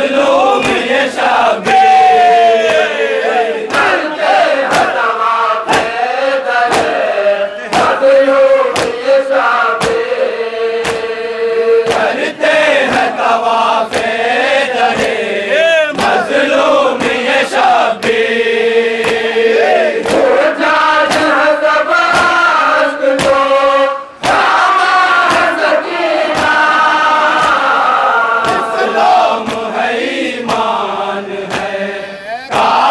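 Crowd of men chanting a noha (Shia lament) in unison, kept in time by a steady beat of sharp hand-on-chest slaps (matam).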